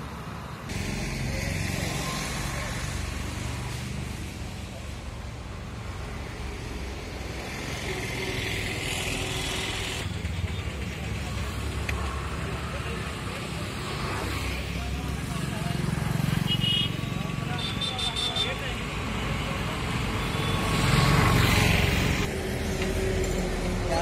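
Outdoor roadside sound with vehicles: a continuous low engine and traffic rumble, with people talking in the background.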